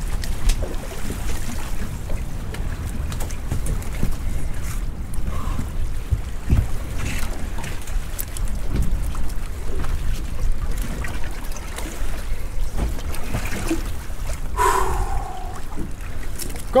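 Wind rumbling on the microphone and sea water around a small open fishing boat, with scattered knocks and clatters as lobster and crab pots are handled on deck.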